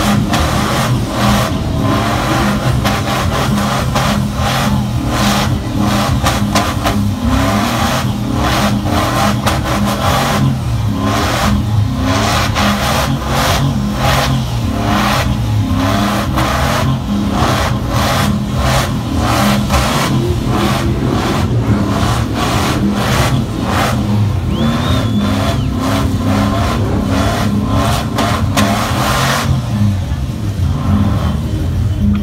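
Chevrolet Silverado pickup's engine held at high revs through a long burnout, its rear tyres spinning in thick smoke. The engine note stays steady and loud the whole time.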